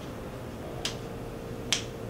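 Two sharp finger snaps, a little under a second apart.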